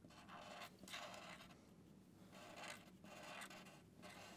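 Faint scratching of a black marker tip drawing short strokes on paper, a few brief strokes one after another.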